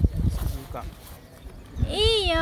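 A knock at the start, then a low rumble with faint scattered voices; just before the end a young child's high voice starts, rising and then falling in pitch.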